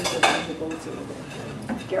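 Light clinking and clattering, with a sharper clink just after the start, over faint background voices.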